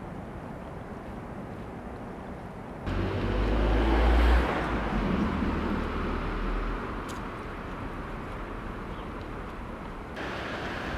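Outdoor city street ambience: a steady background hiss, then from about three seconds a louder low rumble of traffic that swells for a second or so and gradually eases back to the steady hiss.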